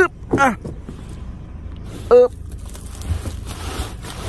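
A man's short grunts, twice, over a steady low rumble, followed near the end by a rustling handling noise around the sack that holds the python.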